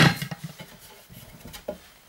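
A sharp knock, then a few lighter clicks and rattles as the wedges are pulled from a homemade axe-eye clearing jig and the axe head is taken out.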